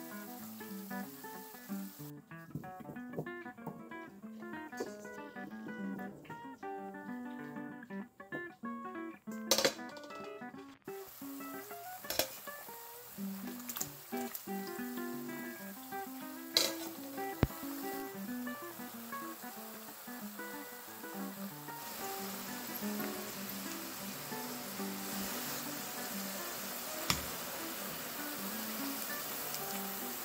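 Acoustic guitar background music. Under it, partway through, comes the steady hiss of oil sizzling around potato fries deep-frying in a pot, with a few sharp clicks.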